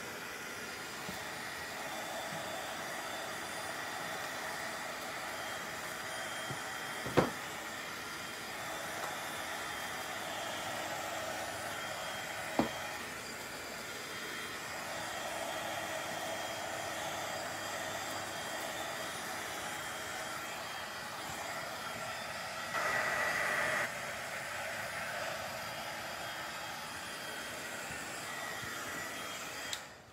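Craft heat gun blowing steadily, drying paper soaked with water-based dye. Two sharp knocks come about five seconds apart early on, and the blowing grows briefly louder about three-quarters of the way through. The heat gun cuts off at the very end.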